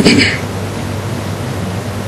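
Steady background hiss with a low, even electrical hum, and a brief voice sound right at the start.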